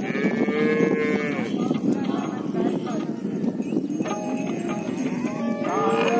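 Herd of cattle mooing, with long calls near the start, about four seconds in and near the end, over a busy background of animal noise and bells ringing.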